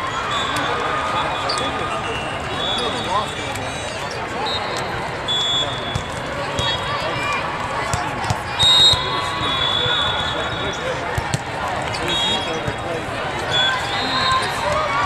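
Indoor volleyball hall with many matches at once: a dense echoing babble of players' and spectators' voices. Volleyballs thud sharply again and again, and short high sneaker squeaks come off the court.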